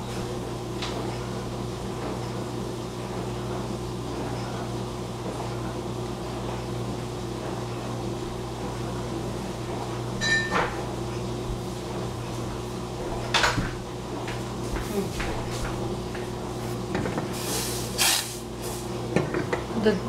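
A steady low kitchen hum under a few separate knocks and clatters of cupboards and containers being handled, the sharpest about halfway through, again a few seconds later, and near the end.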